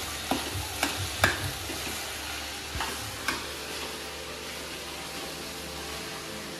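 Chopped vegetable and paneer filling sizzling as it fries in a metal pan on a gas burner while a spatula stirs it. Metal utensils clink sharply against the pan a few times in the first three seconds or so, then only the steady sizzle and stirring remain.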